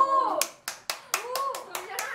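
Hands clapping about eight times at an uneven pace, over excited women's voices.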